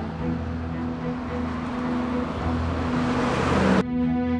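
Outdoor road traffic noise that swells as a vehicle approaches, then cuts off suddenly just before the end, over soft background music.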